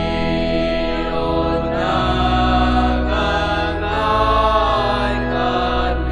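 Voices singing a Tamil church hymn over sustained instrumental chords, the sung melody rising and falling above the held accompaniment.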